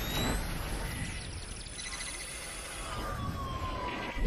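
Electronic sound effect of an animated logo outro: a sustained low rumble under a hissing wash, with thin whistling tones gliding in pitch, one falling steadily near the end.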